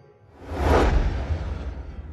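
Whoosh sound effect of an animated logo: a swelling swoosh over a low rumble that rises about half a second in, then fades away.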